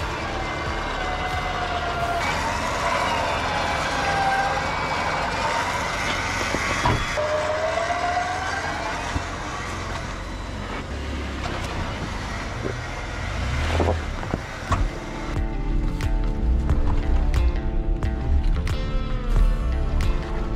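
A vehicle's motor whine rising and falling in pitch over a low rumble while the Jeep works over rocks. From about fifteen seconds in, background music takes over.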